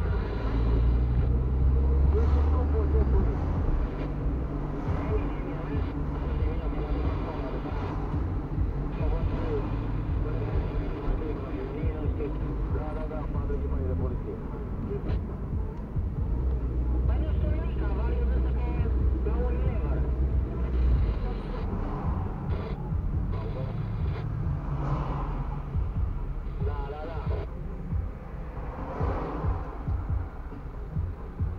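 Low engine and road rumble inside a moving car's cabin, swelling in two stretches near the start and about halfway through, with voices talking faintly over it.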